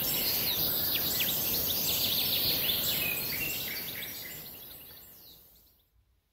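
Birds chirping, many short calls over a steady high hiss, like a nature ambience, fading out over the last couple of seconds.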